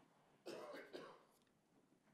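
Near silence, with one faint, short cough about half a second in.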